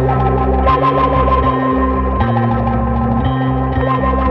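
Instrumental heavy psychedelic stoner rock: distorted, effects-laden electric guitar with echo over sustained low bass notes that change about two seconds in.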